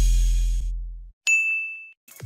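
The tail of a short music sting, its low bass note fading out, then a single bright electronic ding a little over a second in that rings for about half a second: a transition sound effect on a section title card.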